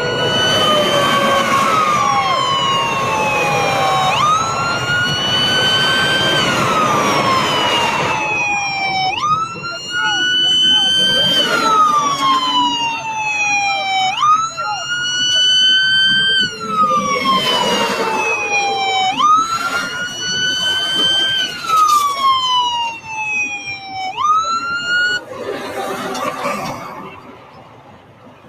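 Police car sirens wailing close by. Each wail rises sharply and falls slowly, repeating about every five seconds, with two sirens overlapping for the first several seconds.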